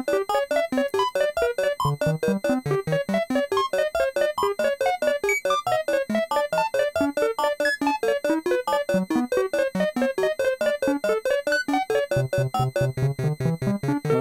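Modular synthesizer playing a fast stream of random-pitched notes, about five a second, through a Doepfer A188-2 tapped BBD delay whose clock is set beyond its rated range. The echoes chase the notes with a crunchy, aliased edge, and faint steady clock noise bleeds into the signal. A low drone comes in near the end.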